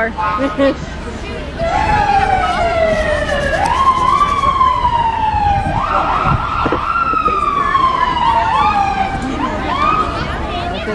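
Emergency vehicle siren wailing, starting about a second and a half in. Each cycle climbs quickly in pitch, then slides down over about two seconds, repeating again and again.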